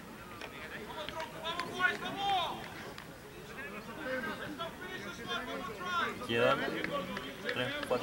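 Voices of several people talking at a distance, overlapping, no words clear.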